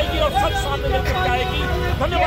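Several men shouting slogans at once, their voices overlapping, over a steady low vehicle rumble.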